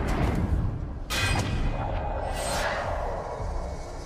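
Battle-scene film soundtrack: a music score under combat sound effects of swooshes and sharp hits. The hits come near the start, just after a second in, and about two and a half seconds in.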